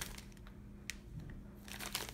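Faint crinkling of a clear plastic packaging bag being handled, with a single light tick a little under a second in and more crackling near the end.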